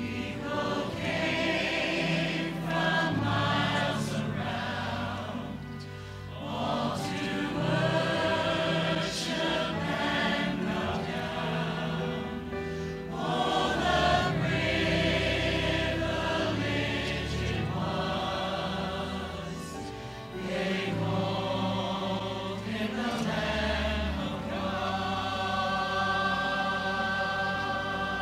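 Church choir singing in parts with instrumental accompaniment, in sustained phrases that swell and ease off, dipping briefly twice.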